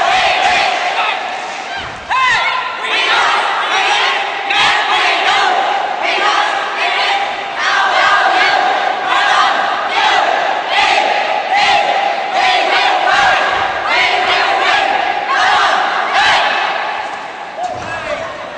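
A cheerleading squad shouting a chant together in loud, rhythmic calls, about one a second, over crowd noise.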